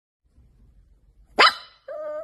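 A pug gives one sharp bark about one and a half seconds in, after faint low rumbling.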